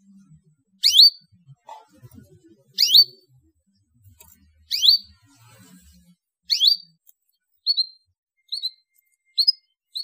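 Domestic canary calling: four loud, sharp upward-sweeping chirps about two seconds apart, then from about three quarters of the way in, shorter, softer chirps coming quicker, under a second apart.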